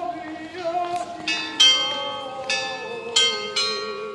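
Bells struck about four times, each ringing out and fading, over a long held low note.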